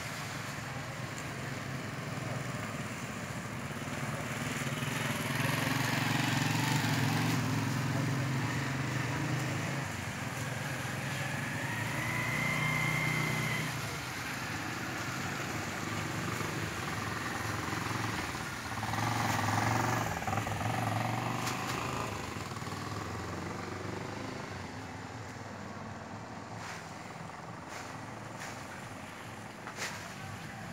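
Vehicles driving past one after another: motorcycle and car engines rise and fade as each goes by. The passes are loudest twice, about a quarter of the way in and again past the middle.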